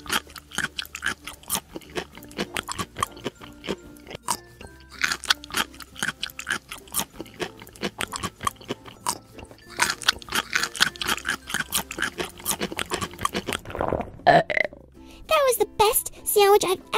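Cartoon-style eating sound effects: quick runs of crunching, munching chomps in several stretches, over cheerful background music.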